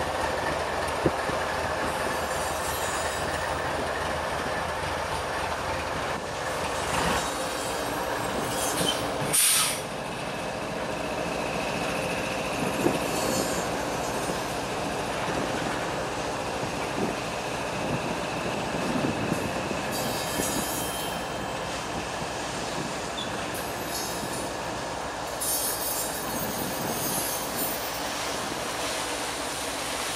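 Loaded freight train of tank cars rolling slowly past, steel wheels running on the rail, with a brief high wheel squeal. A short loud burst of noise about nine and a half seconds in.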